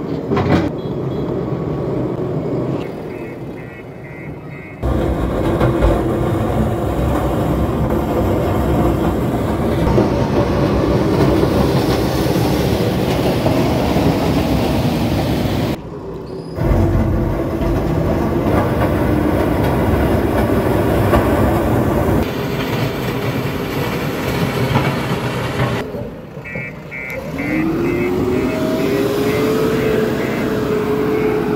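JCB 3DX backhoe loader's diesel engine running under load as its front bucket pushes and levels loose soil. The sound breaks off and resumes abruptly a few times, and near the end the engine revs up with a rising pitch.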